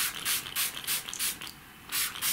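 Small water spray bottle spritzing in quick repeated pumps, each a short hiss, about three a second, with a brief pause near the end.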